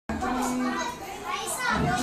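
Children's voices and chatter, with a high rising voice about one and a half seconds in.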